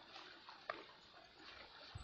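Near silence: faint outdoor background with a soft click a little under a second in.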